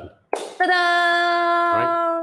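A voice holding one long steady note on a single pitch for nearly two seconds, like a drawn-out sung 'ooooh' of admiration. A short spoken sound cuts in briefly near the end.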